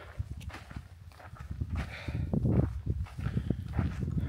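Footsteps walking on a hiking trail, a run of irregular steps that get louder from about halfway.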